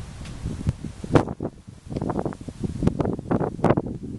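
Gusty wind buffeting the microphone, with the tree's leaves rustling. The gusts come unevenly, sharpest about a second in and again in the last two seconds.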